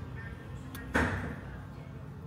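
Café room sound with background music playing; about a second in, a single sharp clack, the loudest sound here, dying away over about half a second.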